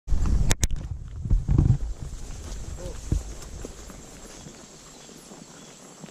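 Horse walking on a dirt forest trail, its hoofbeats soft. A loud low rumble with two sharp clicks fills the first two seconds, then the sound settles to a quiet hush.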